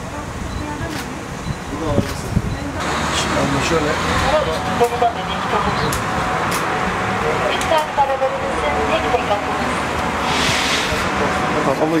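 Steady road traffic noise from vehicles, with people talking over it.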